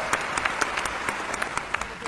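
Audience applauding, a dense patter of many hands clapping that gradually dies down.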